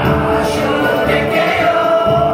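Live Tuvan folk song: voices singing together over a bowed igil (Tuvan two-string fiddle), with a long steady note held through the second half.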